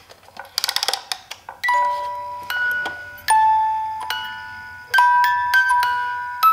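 Wind-up music box playing a slow tune: single plucked metal notes ring out one after another and fade, starting a little over a second in after a quick run of clicks.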